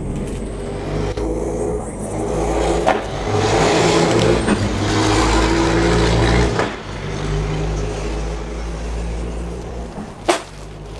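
A motor vehicle's engine running steadily, getting louder with a broad rush of noise for about three seconds in the middle, then dropping back.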